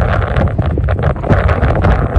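Wind buffeting the microphone of a hand-held phone: a loud, uneven low rumble with irregular crackling gusts.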